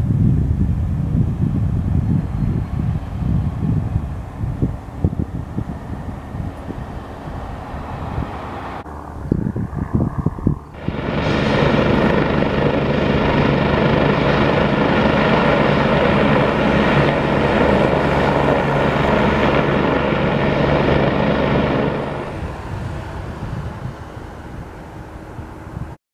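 Wind buffeting the microphone in gusts. About eleven seconds in, a UH-72 Lakota military helicopter's turbines and rotor run loud and steady on the ground, a whine with many tones, which cuts off near the end.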